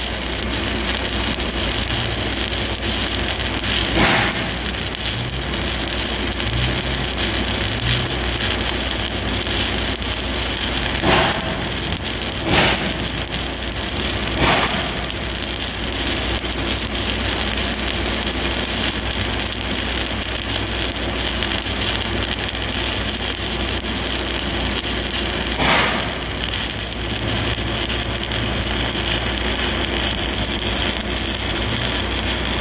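Stick welding arc running overhead: an E7018 5/32-inch rod burning steadily at about 140 amps on a Miller CST 280 inverter. It makes a continuous frying crackle with a few louder pops spread through.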